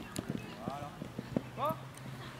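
Running footsteps on a grass pitch: a quick, uneven string of dull footfalls from players running close by. A short shout comes near the end.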